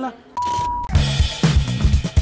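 A short electronic beep, a steady tone of about half a second, then background music with a bass line and a regular drum beat starting about a second in.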